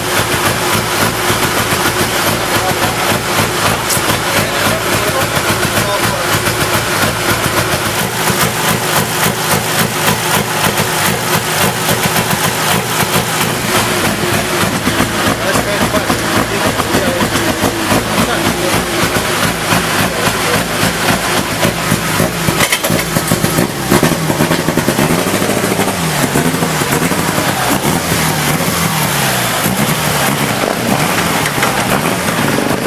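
Mitsubishi Lancer Evolution rally car's engine running, heard from inside the cabin, with a steady rapid crackle of pops. In the last few seconds its pitch rises and falls as it is revved.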